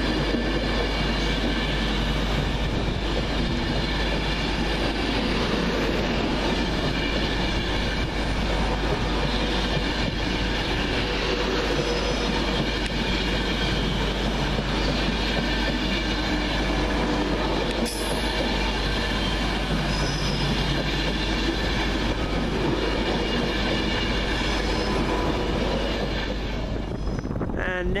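Class 390 Pendolino electric train pulling out past the platform, its carriages running steadily over the rails close by. The sound eases slightly near the end as the last carriages clear.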